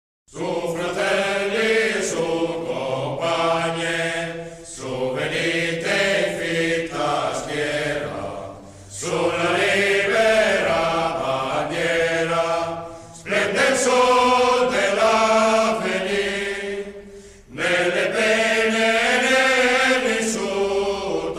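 Vocal music: voices singing chant-like phrases of about four seconds each, with a short break between phrases.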